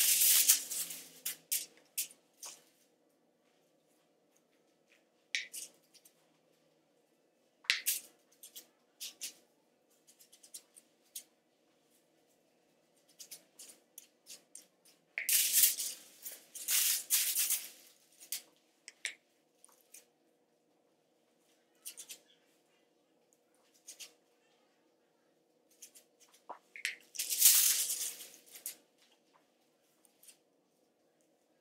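Aluminium hair foils crinkling and rustling in irregular bursts as foil sheets are handled and folded during highlighting, loudest at the start, about halfway through and near the end.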